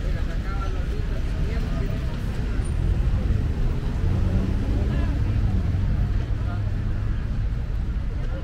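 Open-air street market ambience: indistinct voices of people talking among the stalls over a steady low rumble.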